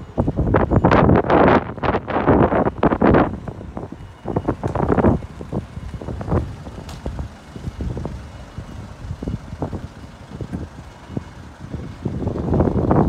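Gusts of wind buffeting the microphone, strongest in the first few seconds and briefly again about five seconds in, over a Peugeot 3008 running and being driven slowly up close.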